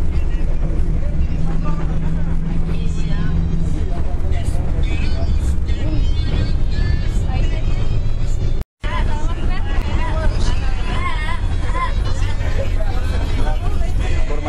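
Steady low rumble of a moving bus heard from inside the passenger cabin, with passengers' voices over it. The sound cuts out completely for a split second about two-thirds through.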